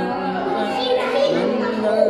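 A man reciting the Quran aloud in Arabic, in a melodic chanting voice with long held notes that glide between pitches.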